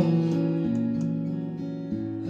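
Acoustic guitar played live, chords strummed lightly and left ringing, slowly fading, between sung lines of a slow song.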